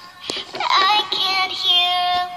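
Pop song playing: a high singing voice holding and gliding between notes over a soft electronic backing.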